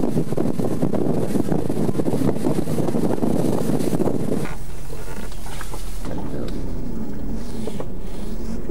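Wind buffeting the microphone on a boat under way at sea. About halfway through, the sound drops abruptly to a quieter steady low hum.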